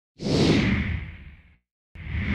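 Whoosh sound effect of an animated logo intro: a rushing sweep that swells quickly, falls in pitch and fades out, with a second whoosh starting just at the end.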